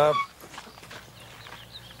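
A man's brief hesitant 'uh', then faint outdoor farmyard ambience with a few soft knocks.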